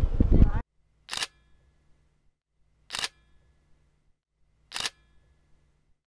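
Three single camera shutter clicks, about two seconds apart, with near silence between them.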